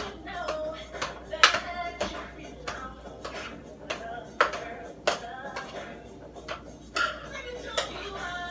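Metal utensil clinking and knocking against a cooking pot while spaghetti is stirred, in sharp, irregular strikes roughly twice a second.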